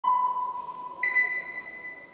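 Two pure electronic beep tones a second apart, the second an octave higher than the first, each ringing and fading away.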